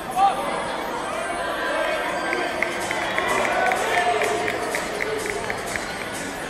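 Arena crowd voices and chatter with music playing, and one loud shout about a quarter second in. A quick run of high, evenly spaced ticks, about four a second, runs through the middle.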